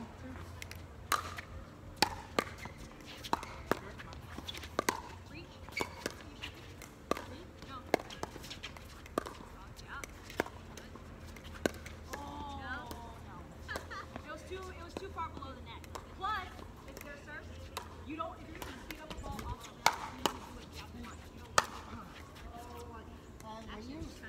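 A pickleball rally: sharp, hollow pops of solid paddles striking the plastic perforated ball, irregular at roughly one a second, with faint players' voices in between.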